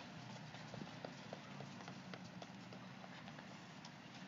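Faint running footsteps of a person sprinting on stone paving, at about four steps a second.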